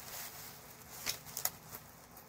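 Paper folders being handled: a faint rustle with a few light taps and clicks about a second in and again shortly after.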